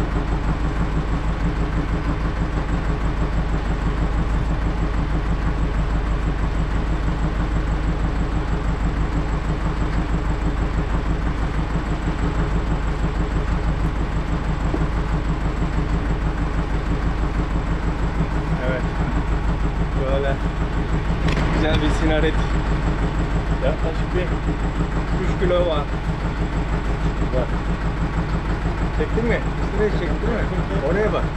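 Boat engine idling steadily, a low hum with a fast, even pulse. A few short knocks and clicks come between about twenty and twenty-six seconds in.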